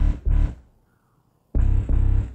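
Synth bass from a Massive software synthesizer, a double-octave bass patch, playing heavy low notes: two short hits, a gap of about a second, then another note near the end.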